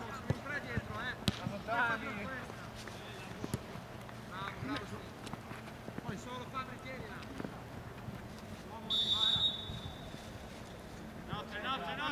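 Seven-a-side football on artificial turf: players shouting to each other and a few sharp kicks of the ball early on. About nine seconds in comes one short, shrill referee's whistle blast, the loudest sound in the stretch, stopping play.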